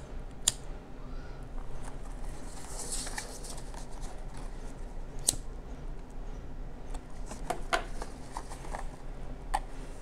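Hands tying a ribbon bow on a cardstock box: soft rustling of ribbon and paper, with a few small clicks and taps scattered through.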